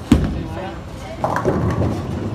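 A bowling ball landing on the lane with a single sharp thud just after release, followed about a second later by voices of people nearby.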